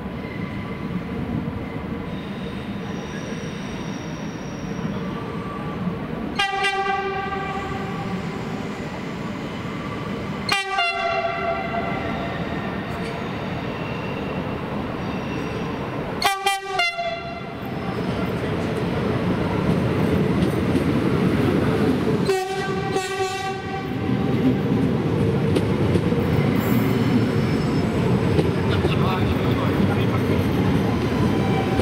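ICNG intercity electric train sounding its horn in four blasts several seconds apart, the third a quick double. Underneath, a rumbling train noise grows louder in the second half as the train gets moving.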